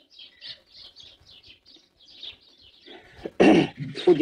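Small birds chirping repeatedly in the background, thin high calls that keep on through the pause. Near the end comes one short, loud, rasping burst of noise.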